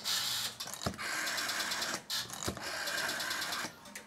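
Electromechanical selectors of a 1950s GEC PAX private telephone exchange stepping in two runs of rapid, even clatter as a call is dialled through, with a sharp relay click about a second in and another about two and a half seconds in.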